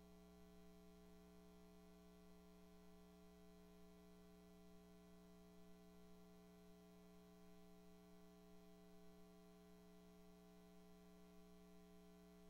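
Near silence apart from a faint, steady electrical mains hum: a low, unchanging buzz with several higher overtones.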